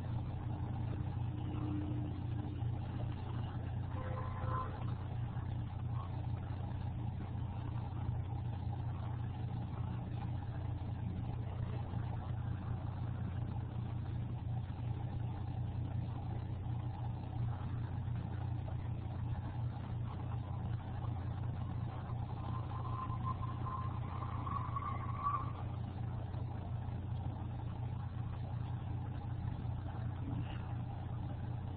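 A steady low hum picked up by an open microphone while nobody speaks, with a few faint brief sounds in the background around four seconds in and again past twenty seconds.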